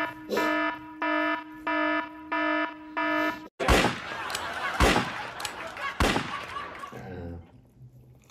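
An edited-in alarm buzzer beeps a little under twice a second, then cuts off sharply. It is followed by three loud gunshots, a revolver sound effect, about a second apart.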